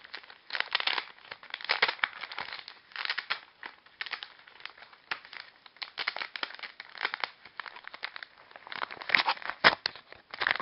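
White paper mailer envelope being torn open by hand, its paper crinkling and ripping in irregular crackles, with the sharpest, loudest rips near the end.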